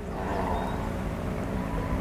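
Steady low rumble and hiss of wind buffeting the microphone outdoors, with no distinct events.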